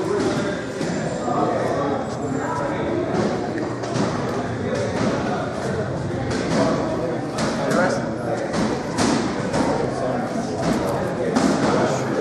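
Busy gym ambience: several people talking at once in the background, with frequent sharp thuds and knocks scattered throughout, more of them in the second half.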